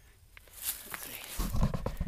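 Rustling of clothing and tarp close to the microphone, with heavy low bumps and knocks from about halfway in, as an arm brushes past right by the camera.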